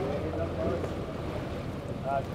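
Steady low drone of a boat engine running, with wind buffeting the microphone and water lapping, and faint voices of people on deck.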